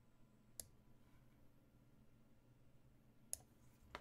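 Near silence broken by sharp, short clicks: one just over half a second in and a quick run of them near the end, the last the loudest. They come from a computer mouse as a knight is picked up and dropped in an online chess game.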